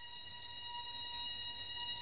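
A steady, high-pitched sustained tone with overtones from the film's soundtrack, slowly swelling in loudness.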